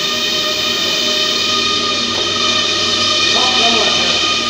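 Curtain coating machine running: a steady, even machine hum made of many held tones that does not change.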